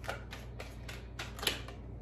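A deck of tarot cards being shuffled by hand: a quick, uneven string of crisp clicks as the cards slip and snap against each other, with one louder snap about three quarters of the way through.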